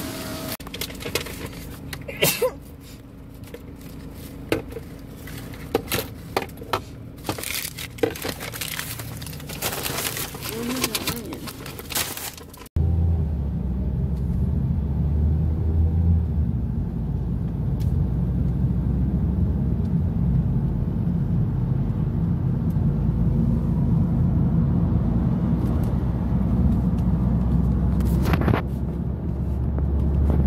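A car's cabin: first a low steady hum with scattered clicks and knocks, then an abrupt switch about 13 seconds in to the steady low rumble of the car driving on the road, heard from inside.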